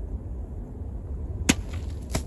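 A single sharp strike about one and a half seconds in: the gut spike of a homemade steel machete, cut from a concrete-cutting saw blade, punching into a shaken drink can. A steady low wind rumble runs underneath.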